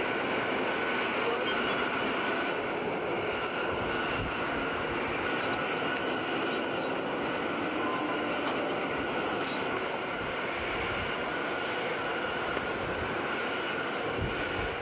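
Dragline excavator working: a dense, steady mechanical running noise with a faint high whine, and a few light knocks.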